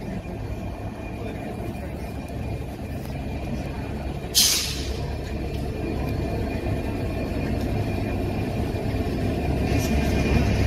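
GB Railfreight Class 69 diesel locomotive 69001 approaching, its EMD 710 engine rumbling steadily and growing louder as it nears. A short, sharp hiss of air about four seconds in.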